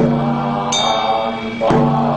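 Vietnamese Buddhist liturgical chanting, a voice holding long intoned notes. A drum stroke falls at the start and another near the end, and a bell rings out in between.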